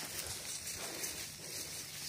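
Leaves and stems of dense brush rustling as a hiker walks through it, an irregular soft hiss with faint footfalls.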